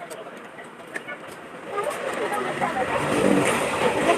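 People talking indistinctly over a low rumble. Both come up about two seconds in.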